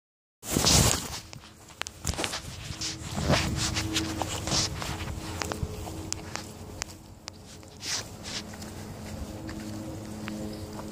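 Footsteps walking over grass and leaf litter: irregular rustling, crunching steps with handling noise from a handheld camera, a louder rustle just after it begins.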